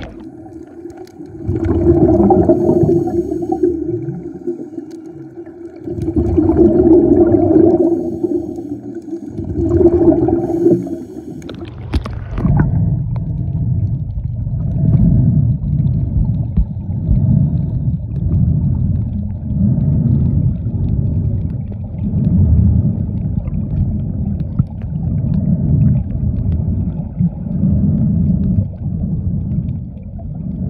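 Underwater sound picked up by a submerged camera. At first a steady hum comes and goes in three long stretches, each a few seconds. Then, from about twelve seconds in, low rumbling pulses repeat about every second and a half.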